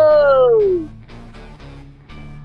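A man's drawn-out shout falling in pitch over the first second, then quieter background music with guitar.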